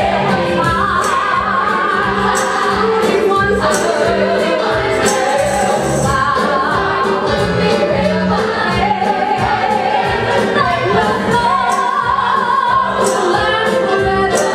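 Live stage-musical performance of a gospel-style number: a female soloist and a full chorus singing over accompaniment with a steady beat.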